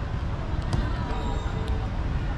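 Footsteps on a dirt field and indistinct voices in the distance, over a steady low rumble.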